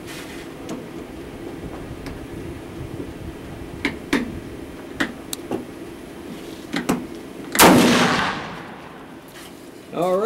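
A single shot from a 7mm-08 Remington Pachmayr Dominator single-shot pistol with a 14.5-inch barrel on a 1911 frame: one sharp blast about three-quarters of the way through that rings out and fades over a second or so. A few small clicks come before it.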